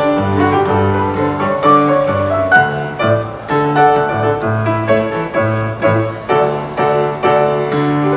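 Grand piano played solo: a repeating bass line in the left hand under chords and a melody in the right.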